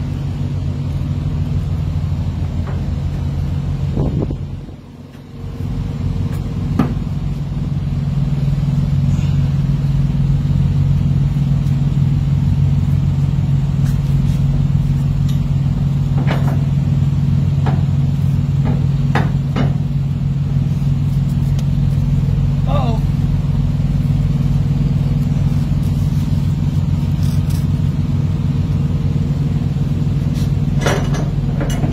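A semi-truck's diesel engine idling steadily, a low hum that dips briefly about five seconds in. A few scattered clicks and knocks sound over it.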